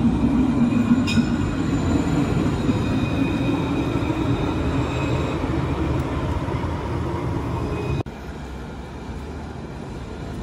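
Alstom Citadis tram passing close by, a steady rumble of steel wheels on the rails with a few thin, steady whining tones above it. About eight seconds in the sound cuts abruptly to a quieter, more distant tram scene.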